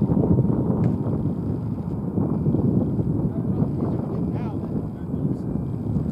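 Gusty wind buffeting the microphone, an irregular low rumble, with faint indistinct voices in the background.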